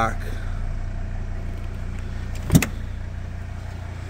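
A steady low hum with a single sharp knock about two and a half seconds in.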